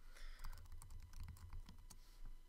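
Someone typing a web address on a computer keyboard: a quick, irregular run of light key clicks.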